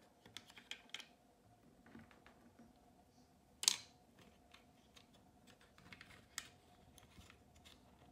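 Small scattered clicks and taps of small screws being fitted by hand into a circulator pump's electrical box, with one sharper click about three and a half seconds in.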